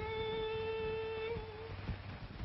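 A woman's singing voice holding one long note with a slight waver, which fades out a little before the end.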